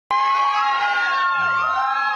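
Audience cheering and whooping, with long held shouts.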